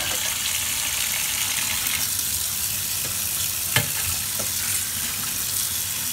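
Tap water running steadily onto a block of instant noodles in a stainless steel colander in a sink. A single knock comes about two-thirds of the way in, with a fainter one just after.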